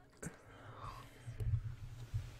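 A faint, breathy voice close to a microphone, near a whisper, with a sharp click about a quarter second in.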